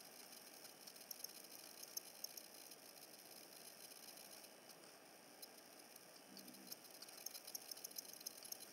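Near silence: room tone, with a few faint small ticks.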